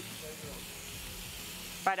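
Pork loin medallions searing in a hot pan, a steady sizzle. A woman's voice comes in just before the end.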